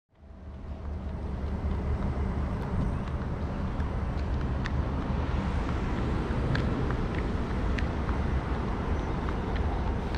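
Steady low rumble of vehicle engines and traffic, fading in over the first second, with a few faint clicks.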